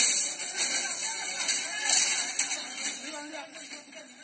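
A voice calling "raka raka" over a high jingling shimmer, both fading away steadily toward the end.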